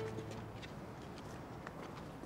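A few faint, scattered footsteps on pavement over quiet street ambience, just after a music cue dies away at the start.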